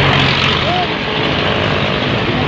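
Diesel engine of a Volvo EW130 wheeled excavator running steadily and loud, with a man's voice calling out briefly.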